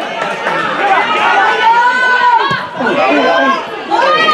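Several voices shouting and calling out over one another at a football match, with no single speaker standing out.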